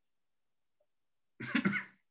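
Silence, then about one and a half seconds in, a brief vocal sound from a person on a video call, lasting about half a second.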